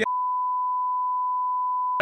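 Censor bleep: one steady beep at a single pitch, held for two seconds, with all other sound muted beneath it.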